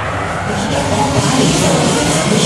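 Steady rushing mechanical noise of a running fairground octopus ride, with faint music underneath.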